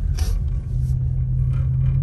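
Car cabin noise while driving slowly: a steady low engine and road rumble with a low hum, and a brief hiss just after the start.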